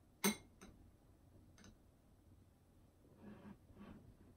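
A metal spoon clinking against a ceramic bowl as a child scoops ice cream: one sharp clink about a quarter second in, then a few fainter ticks.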